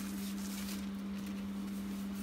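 Steady low hum under a faint hiss: background room tone, with no distinct clink or ratchet click from the wrenches.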